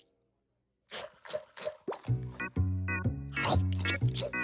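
Cartoon soundtrack: after a brief silence come a few short, noisy comic sound effects, then about halfway in a bouncy music cue starts with a bass note pulsing about twice a second.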